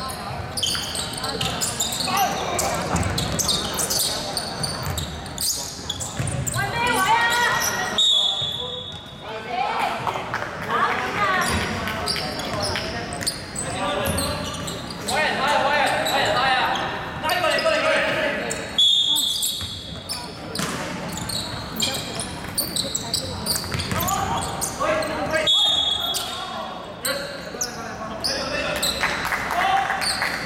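A basketball bouncing on a hardwood gym floor amid players' shouting voices, echoing in a large hall. Three brief high-pitched squeals come about 8, 19 and 25 seconds in.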